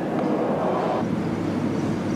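A steady, dense rumbling noise, its upper part dropping away about halfway through.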